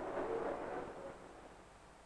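Faint hiss and low rumble with no distinct event, fading to near silence in the second half: background noise of an old film soundtrack between lines of narration.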